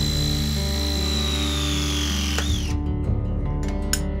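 Battery-powered RIDGID press tool crimping a copper pipe fitting: a steady high motor whine that sags slightly in pitch and cuts off abruptly about two and a half seconds in as the press completes, then a sharp click near the end.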